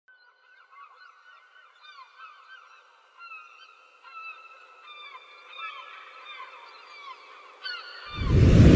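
A flock of birds calling: many short, overlapping calls that slide downward in pitch. It is faint at the start and grows gradually louder.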